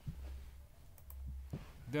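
Computer mouse button clicking a few times in the second half, over a low hum.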